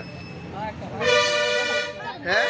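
A vehicle horn sounds once, a steady, unwavering tone held for just under a second about halfway through.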